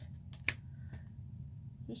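A single sharp click about half a second in, followed by a fainter click about half a second later, over a low steady hum.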